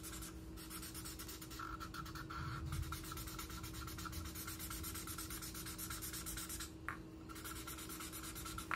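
Thick black Expo marker scribbling quickly back and forth on paper laid over cardboard, a steady dry rubbing and scratching as it fills in a large black area. The marker seems to be running dry.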